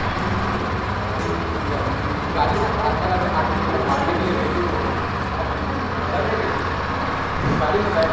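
KTM Duke 200's single-cylinder engine idling steadily, with faint voices in the background.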